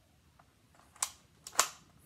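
Cocking action of a home-made Nerf blaster built on an ER2 paintball gun body, worked by its pull pin: a sharp click about a second in, then a small click and a louder snap half a second later.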